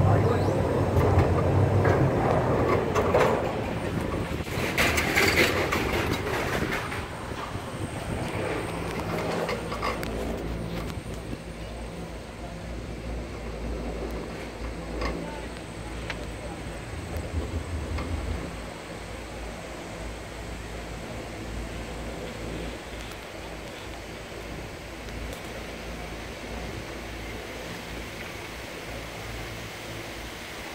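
Doppelmayr cabriolet lift in motion, heard from an open standing cabin. The lift's machinery hums loudly while the cabin leaves the base station, then gives way to a steadier, quieter rumble of the cable run and wind. A brief low rumble comes a little past halfway, as the cabin passes a tower.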